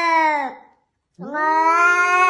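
A cat yowling in long, drawn-out calls: one ends about half a second in, and after a short gap another begins just past a second in.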